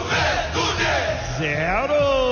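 Radio goal broadcast: shouting voices over crowd noise, with one voice sliding up in pitch near the end into a long held note.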